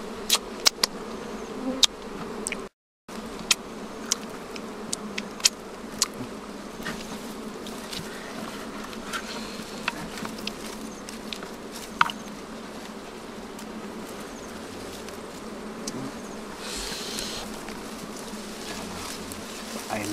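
A swarm of wild honey bees buzzing, a steady droning hum, with scattered sharp clicks and snaps from the comb being handled, most of them in the first few seconds. The sound cuts out briefly about three seconds in.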